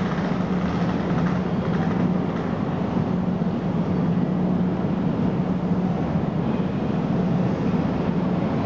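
EF64 1000-series electric locomotive approaching slowly along the platform at the head of a train: a steady low drone with a constant hum.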